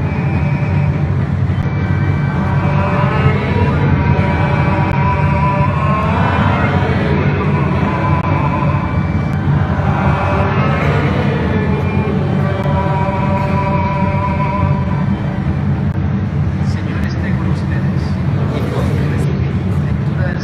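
Voices singing a hymn with musical accompaniment during a Catholic Mass in a large church, with notes held for a second or two over a steady low rumble.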